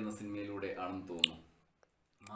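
A man talking in Malayalam, cut through by one sharp, loud click about a second in; then the sound drops out to dead silence near the end.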